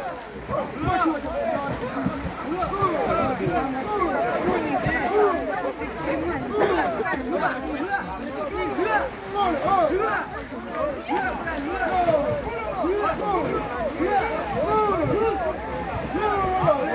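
Many people's voices overlapping at once, a crowd chattering and calling out with no single clear speaker, alongside a low rumble of wind on the microphone.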